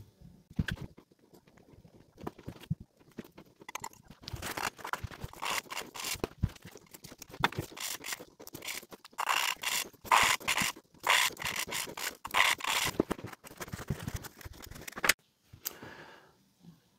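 An exhaust valve being hand-lapped into its seat in a Mercedes M120 V12 cylinder head: a suction-cup lapping stick is spun back and forth, and fine lapping compound scrapes between valve face and seat in quick repeated strokes. The scraping starts about four seconds in and stops near the end. It is a light clean-up lap to bring up a bright sealing ring on a dirty seat.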